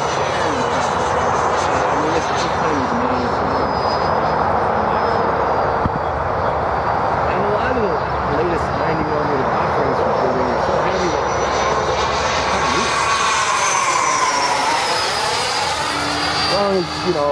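The 90 mm electric ducted fan of a Freewing F-18 RC jet flying at about half throttle gives a steady rushing whine with a thin high fan tone. Near the end the sound swells and its pitch sweeps up and back down as the jet passes.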